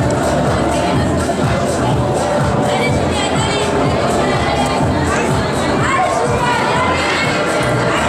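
A crowd of spectators, many of them children, shouting and cheering on a climber, with music underneath. Louder high-pitched shouts rise over the din about three seconds in and again near the end.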